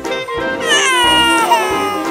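A baby crying: one long wail that starts about half a second in and falls in pitch, over background music.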